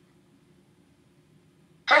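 Quiet room hum, then near the end a NAO humanoid robot's synthesized voice starts saying "Hi, I'm Stacy", its voice set low and fast.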